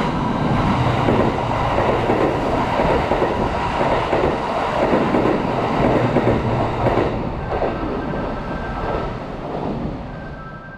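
Kintetsu 80000 series Hinotori limited express passing through the station without stopping: a loud, steady rumble of wheels on the rails that eases off over the last few seconds as the train clears the platform.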